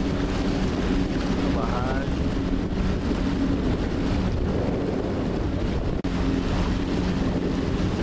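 Boat motor running steadily with a constant hum, over water and wind noise on the microphone. The sound drops out for an instant about six seconds in.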